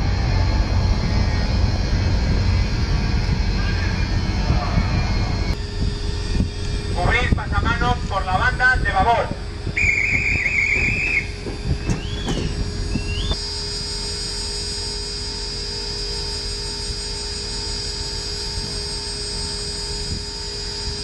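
Low rumble, then a shouted voice, then a bosun's call piping: a warbling, trilled high note held for about a second, followed by two short rising notes. Steady faint tones and hum follow.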